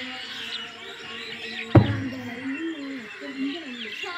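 A heavy tractor tyre thuds once onto the dirt ground a little under two seconds in, as it is flipped in tyre-flip training. Birds chirp throughout.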